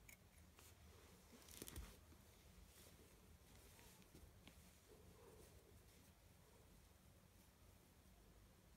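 Near silence with faint rustling and clicks of hands working yarn while weaving in the loose ends of a crochet piece, with one brief louder rustle about a second and a half in.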